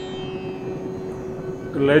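The held drone of the sitar intro music rings on at an even level, with no new plucked notes. A man's voice starts near the end.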